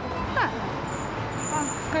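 Steady city street traffic noise, with brief snatches of a voice.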